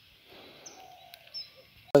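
Faint songbird chirps: a few short, high whistles over quiet outdoor stillness. A man's voice starts right at the end.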